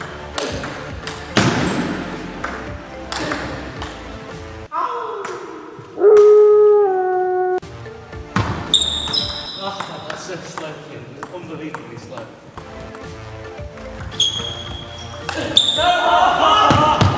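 Table tennis rally: the ball clicks off the bats and pings off the table in quick alternation. Midway, a loud drawn-out voice-like tone falls in pitch in steps for about two seconds.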